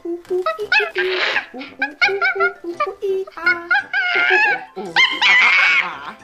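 A woman imitating a monkey: quick repeated "ooh ooh" hoots broken by high, wavering "eee" screeches, three of them, the loudest and longest near the end.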